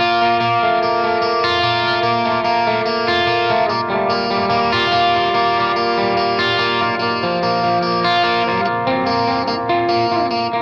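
Electric guitar playing sustained chords that ring out and change every second or two, with no voice or drums standing out.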